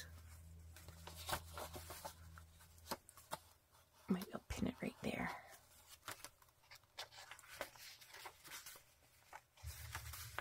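Faint rustles and light taps of paper pages and a card flap being handled and turned in a handmade junk journal. A low hum sits underneath at the start and again near the end.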